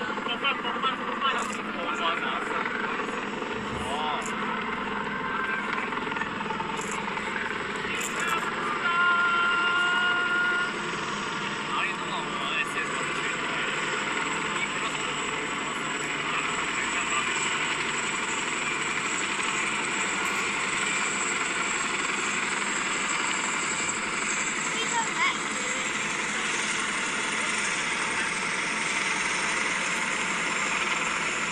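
Military helicopters, a tandem-rotor Chinook with Apache escorts, flying past in formation: a steady rotor drone heard through window glass, mixed with people's voices.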